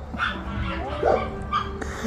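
A three-to-four-month-old puppy giving two short, soft cries, around half a second and a second in.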